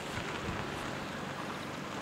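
Wind rushing over the camera microphone: a steady, even rush with no distinct events.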